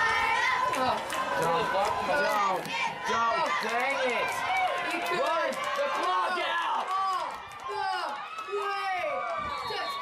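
Spectators in the stands shouting and yelling, many excited voices overlapping as a player makes a long run at a youth football game.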